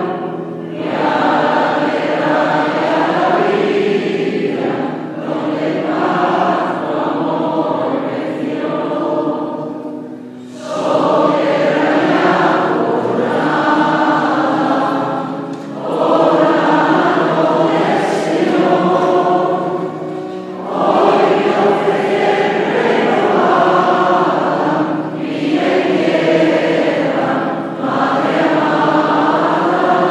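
Mixed choir of men's and women's voices singing a hymn in long phrases of about five seconds, with short breaths between them.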